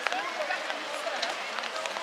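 Many high children's voices shouting and calling over one another during a youth football match, with a sharp knock just at the start.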